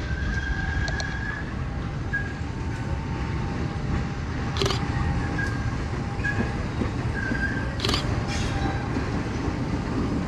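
Diesel-electric locomotive, a CC 201, approaching slowly with a steady low rumble. A thin high squeal comes and goes, and a few sharp clicks fall in the second half.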